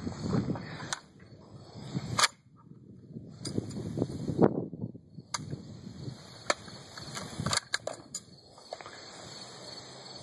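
Metallic clicks and clacks of a UTS-15 12-gauge bullpup pump shotgun being handled and racked, the loudest about two seconds in, then the trigger falling with only a click and no shot: a misfire, the firing pin giving just a light strike on the primer.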